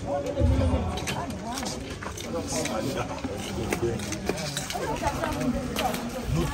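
Several people chatting and calling to each other in the background, no one voice close to the microphone, with a brief low rumble about half a second in.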